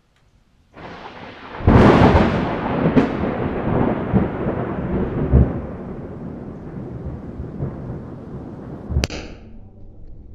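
Thunderclap sound effect: a rumble starts about a second in, breaks into a loud crack with a second sharp crack just after, then rolls on and slowly fades. Near the end a short sharp hit with a brief ringing tone.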